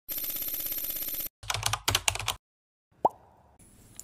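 Intro sound effects: a steady buzzy electronic tone for about a second, then a few quick punchy hits, a short silence, and a single quick rising pop about three seconds in.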